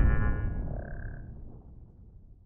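The fading tail of a cinematic logo sound effect: a deep boom dying away under a shimmer of high ringing tones, with a short high tone about a second in, nearly gone by the end.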